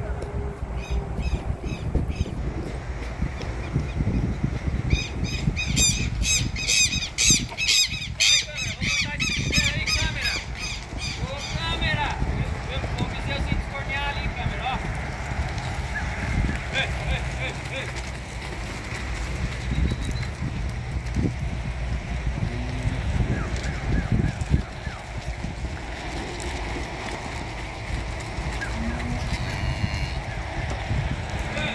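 Steady low rumble of wind and movement on a microphone carried by a rider on a mule herding calves through a dirt corral. From about five to eleven seconds in, shrill, rapidly repeated bird calls sound over it.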